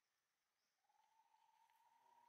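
Near silence, with a faint, steady, high single tone coming in a little under halfway through and holding.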